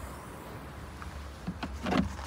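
The Škoda Octavia's boot floor panel being taken hold of by its handle and lifted, with a couple of light knocks near the end, the last the loudest, over a steady low hum.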